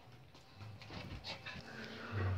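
Faint sounds of a small dog playing with a plush heart toy: a few soft, short scuffs and rustles.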